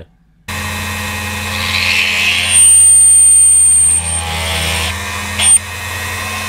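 Small electric drill on a stand, fitted with a wood drill bit, starting up about half a second in and running with a steady hum while the bit cuts away the copper top layer of a PCB around a drilled hole. The loudest stretch comes in the middle, with a high steady whine lasting over a second, and the whine comes back briefly near the end.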